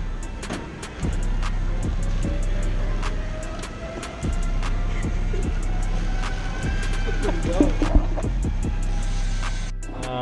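Background music: a hip-hop beat with a steady deep bass and regular sharp hi-hat ticks.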